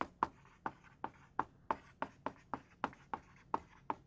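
Dry-erase marker writing on a whiteboard: a quick run of short squeaky strokes, about three a second, as the letters are drawn.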